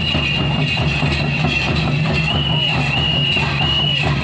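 Live drumming for a Santhali traditional dance, with a high steady piping tone over it that wavers in a repeating pattern.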